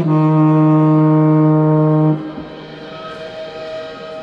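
Marching band brass holding a loud sustained chord that cuts off about two seconds in, followed by softer, quieter held notes from the band.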